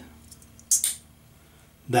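Metal cap of a Merkur Futur–style safety razor being fitted over a double-edge blade: two quick, sharp metallic clicks about three-quarters of a second in as the cap seats.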